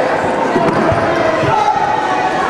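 Spectators' voices chattering and calling out in a large gym hall, with a couple of dull low thuds about one and one and a half seconds in.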